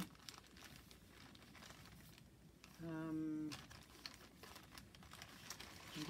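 Faint crinkling and rustling of a clear plastic zip bag and the paper pieces inside it as they are handled. A short hummed "mmm" from the crafter comes about three seconds in.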